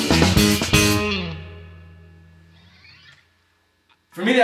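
A band's final chord: a few last hits of drums and electric guitar in the first second, then the chord of guitar and bass rings out and fades away over the next two seconds.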